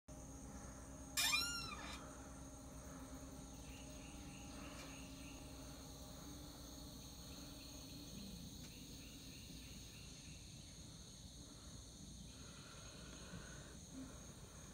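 Steady high-pitched insect chorus in the evening, faint throughout. About a second in, a single louder animal call stands out, rising then falling in pitch, and a few fainter calls follow later.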